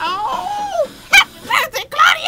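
A woman's high, falsetto vocal yelps that slide down in pitch, with a single sharp click about a second in.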